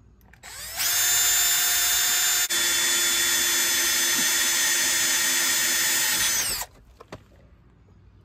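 Cordless drill with a 5/32-inch bit boring through a stainless steel slide ski. It spins up about half a second in, runs steadily for about six seconds with a momentary break partway, then winds down and stops.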